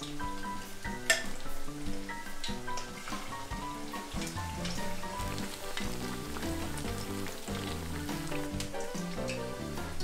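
Batter fritters of shirauo (icefish) sizzling steadily as they fry in a pan of hot oil, with a few sharp crackles, the strongest about a second in. Soft background music plays underneath.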